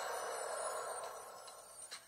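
Shimmering, chime-like magic sound effect fading away over about a second and a half, with a faint click near the end. It is heard through a television's speaker.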